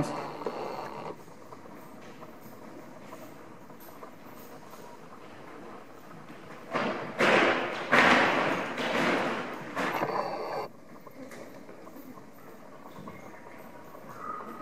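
A horse walking over a tarp laid on a dirt floor: loud rustling and crackling of the sheet under its hooves for about four seconds in the middle. Quieter hoof steps on dirt come before and after.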